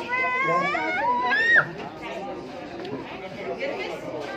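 A high-pitched voice wavering up and down, gliding higher and cutting off after about a second and a half, followed by crowd chatter.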